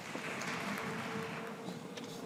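A large audience rising to its feet in a hall: a broad, even rustle of clothing, seats and shuffling. A single held musical note comes in faintly underneath a moment in.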